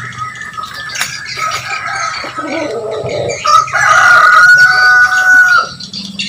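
A rooster crowing: one long, drawn-out call starting about three and a half seconds in and stopping shortly before the end, the loudest sound here. Shorter chicken calls come before it.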